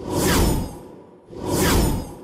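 Two whoosh sound effects on an animated graphic transition, each swelling up and fading away in under a second and sweeping down in pitch, with a deep low end; the second comes about a second and a half after the first.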